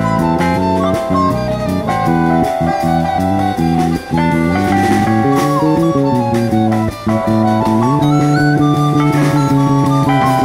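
Small jazz group playing live: a flute carries the melody over guitar chords, with a drum kit keeping time.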